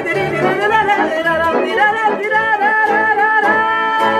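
Live Romanian folk music: accordion and violin playing with a woman singing with vibrato, the melody settling about three and a half seconds in onto a long held closing note.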